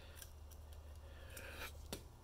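Faint small clicks and scraping as the Samsung Galaxy A01's plastic SIM and SD card tray slides out of its slot and is handled, a few ticks scattered through.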